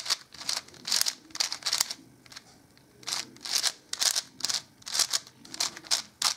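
Layers of a plastic 5x5 puzzle cube being turned by hand in quick succession, each turn a short plastic click-and-rasp. The turns come several a second, with a pause of about a second around two seconds in.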